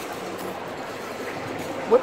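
Food-court background noise: a steady hiss with faint, indistinct chatter from other diners.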